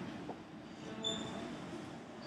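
Steady low background noise of a large room, with a short high-pitched squeak about a second in.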